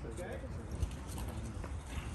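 Background voices talking, off-mic, with one sharp knock just under a second in.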